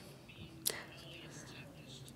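A pause between sentences of speech: faint microphone room tone with one short, sharp click under a second in.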